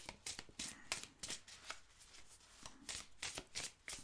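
A deck of oracle cards being shuffled by hand, the cards slipping and tapping against each other in quick, irregular strokes, several a second.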